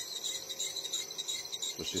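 Electric motor starting up on a Rexroth variable-frequency drive, coupled to a second induction motor used as a generator. A steady, slightly pulsing high-pitched whine from the drive's switching sits over a fainter, lower hum.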